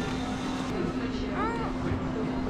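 Game-arcade background din: a steady low hum of machines with indistinct voices, and one short rising-and-falling tone about one and a half seconds in.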